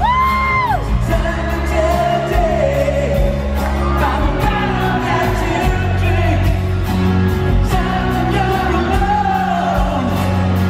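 Live rock band in an arena, with acoustic guitars strummed under a male voice singing and the band backing at a steady, loud level. A brief high held note rises in at the start and falls away within the first second.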